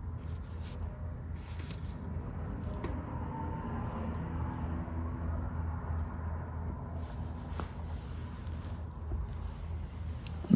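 Steady low background hum, with a few faint brush strokes rubbing on xuan paper in the first couple of seconds.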